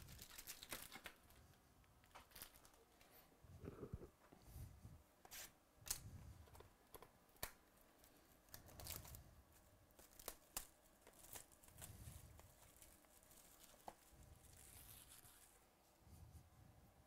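Faint crinkling and tearing of plastic shrink wrap being pulled off a sealed trading-card box, in scattered sharp crackles and short rustles.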